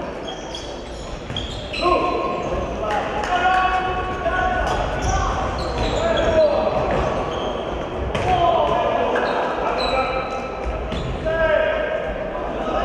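Sounds of an indoor handball game in a large sports hall: a handball bouncing on the wooden court floor amid players' shouts and calls, with shoes squeaking now and then.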